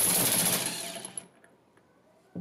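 Makita cordless power driver with a 30 mm socket running, spinning a valve cap out of a brass pump manifold. Its high motor whine fades and stops a little over a second in.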